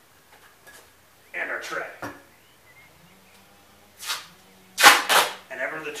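Duct tape pulled off the roll in three short, loud rips, the loudest two close together about five seconds in, as it is wound around a boot to fasten a wooden tread board.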